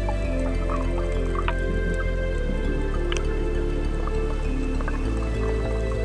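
Calm background music: held chords over a steady bass that changes note about every two and a half seconds, with a slow melody of plucked notes above.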